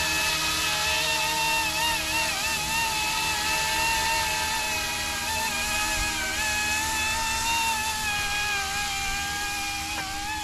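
Electric RC scale helicopter in flight: a steady high-pitched whine from its motor and rotor, the pitch wavering slightly up and down as the throttle shifts, over a steady hiss.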